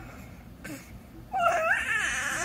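Baby vocalizing: a short faint sound about halfway through, then a loud, high-pitched, wavering whine starting about a second and a half in.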